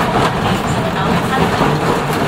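A passenger train carriage's running noise heard from inside, steady throughout, with passengers' voices over it.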